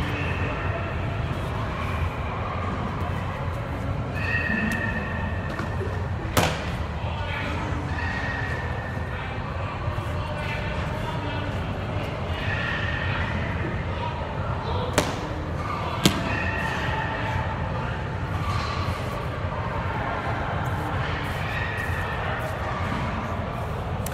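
Loud indoor sports hall ambience: a steady low rumble with distant voices, broken by a few sharp bangs, one about a quarter of the way in and two close together just past the middle.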